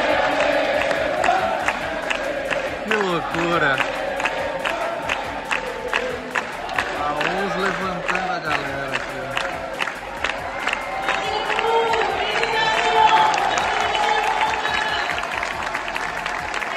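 Large stadium crowd cheering and clapping in rhythm, about three claps a second, with shouting and chanting voices rising and falling above it.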